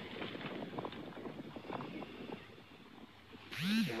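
Faint footsteps on dry, gravelly dirt as a person walks, a scatter of short irregular scuffs and crunches.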